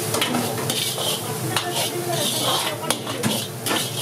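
Steel ladle scraping and knocking against a large wok as rice with peas is stirred and tossed, over a sizzle of frying. Sharp clanks of the ladle on the pan come every second or so.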